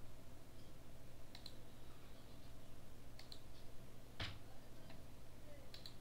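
A handful of separate clicks from a computer mouse and keyboard, the strongest a little past four seconds in, over a steady low hum.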